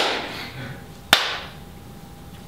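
Two slow, sharp handclaps about a second apart, the first at the start and the second just after one second, each with a short echo in the room.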